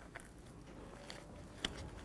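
Faint sounds of hands mixing flour and carrot purée into dough in a plastic bowl, with a few soft clicks, the clearest near the end.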